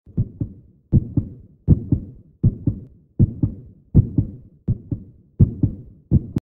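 Heartbeat sound effect: a steady run of paired thumps, about eight beats at roughly 80 a minute, each a double thump.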